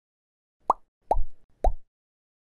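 Three short cartoon 'pop' sound effects about half a second apart, each a quick downward-sliding bloop. They accompany three social-media icons popping onto an animated end screen.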